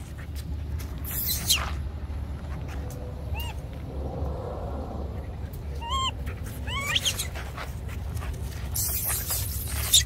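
Short high-pitched squeals, three or four of them, come from a dog and a baby monkey at rough play, about three and a half, six and seven seconds in. Brief bursts of rustling noise come near the start and near the end.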